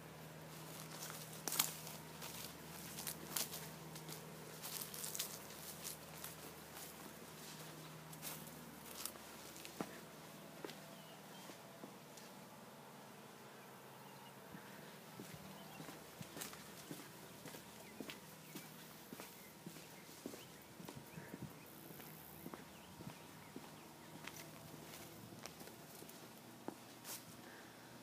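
Faint footsteps of a person walking, heard as many light, irregular steps and clicks. A faint steady low hum runs beneath them and ends about eight seconds in.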